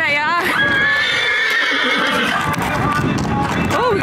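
A horse whinnying: one long call that starts high and quavering, then holds and slowly falls and fades over a couple of seconds.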